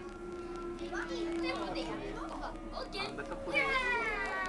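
People's voices inside a train carriage over a steady hum from the train for the first two seconds or so. Near the end, a loud pitched voice slides downward.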